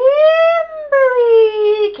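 A high-pitched voice drawn out in two long, howl-like notes: the first rises and then holds, and the second slides slowly down.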